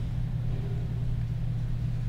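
A steady low hum, the constant background drone under the recording, with nothing else standing out.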